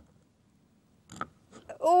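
Mostly quiet while a rubber balloon is blown up by mouth, with a brief soft sound a little after a second in. Near the end a voice says a loud 'oh'.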